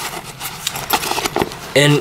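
Stiff Vinylon F fabric of a Fjällräven Kånken Mini backpack rustling as hands grip and flex it, a scratchy run of small quick ticks.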